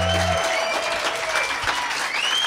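Small audience applauding and cheering at the end of a live song; the band's last low chord stops about half a second in.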